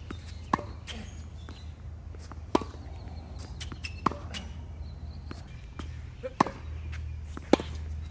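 Tennis balls struck by rackets and bouncing on a hard court during a hitting drill: sharp pops one to two seconds apart, about five loud ones with fainter ones between.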